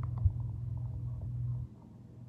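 A man's low, steady closed-mouth hum, held for about a second and a half before it stops, with a single soft knock from the card handling near the start.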